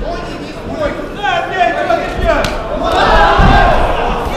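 Crowd shouting and yelling around an MMA cage, swelling louder about two seconds in as the fighters close and clinch, with a single sharp crack about halfway through.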